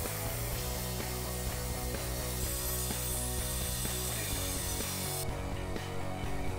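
A power tool working the steel of a tow hitch makes a steady, hissing noise, over background music. It cuts off suddenly about five seconds in.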